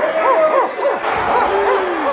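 A crowd of men barking like dogs together in a rapid run of short, overlapping woofs: the Mongrel Mob gang's traditional bark.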